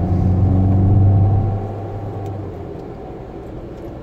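Car engine pulling with a steady low hum heard from inside the cabin, then dropping away about a second and a half in as the throttle eases off.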